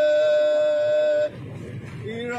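A singing voice holding one long, steady high note, which breaks off a little over a second in, leaving fainter background noise.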